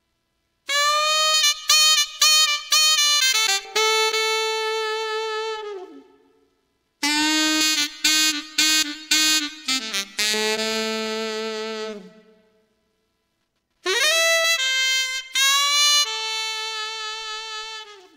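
Yamaha Genos saxophone voice playing three short melodic phrases, each a run of short detached notes ending on a long held note, with brief pauses between them. It is heard through an active equalizer plug-in.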